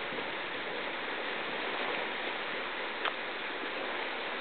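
Steady rushing of a fast, churning glacial river running over whitewater, with one brief click about three seconds in.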